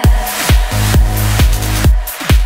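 Electronic dance music: a steady four-on-the-floor kick drum comes in right at the start, about two beats a second, over a deep bass line and synth chords.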